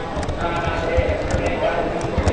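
Several people's voices talking at once, with a run of short, soft low thumps.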